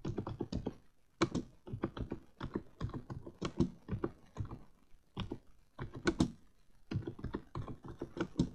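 Typing on a keyboard: quick, irregular key clicks, several a second, in short clusters.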